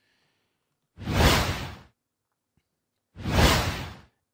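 A man breathing out heavily twice, close to the microphone: two hissing rushes of breath, each about a second long, about two seconds apart.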